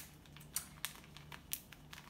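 Clear plastic zip-top bag being handled and pressed shut, giving a few separate sharp crinkles and clicks.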